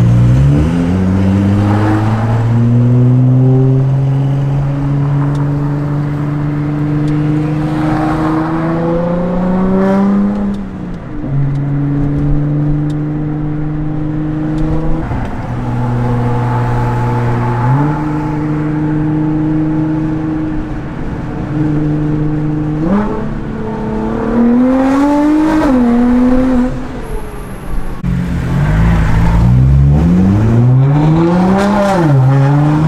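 Nissan GT-R R35's twin-turbo V6 heard from inside the cabin while driving. It accelerates hard at the start with its pitch climbing, runs through the middle with several sudden drops and steps in pitch as it changes speed, and pulls hard again near the end with its pitch rising steeply.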